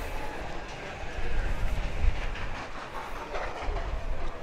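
Wind buffeting the microphone: an uneven, gusting low rumble of noise.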